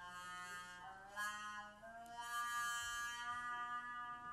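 Trumpet playing a slow, improvised line of long held notes, stepping to a new pitch about a second in and again about two seconds in.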